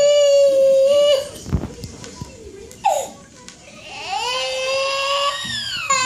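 Toddler crying in a tantrum: a long, held wail that breaks off about a second in, a short cry near the middle, then another wail that rises and holds until the end.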